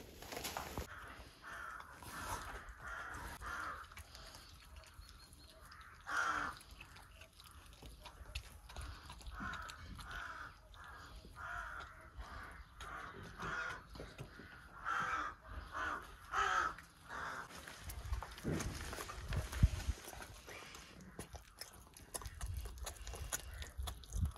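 An animal repeating short, harsh calls many times in a row. A few low thumps follow near the end.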